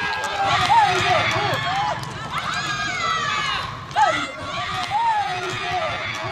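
A group of cricket players and onlookers shouting and cheering in celebration, with many voices calling over one another.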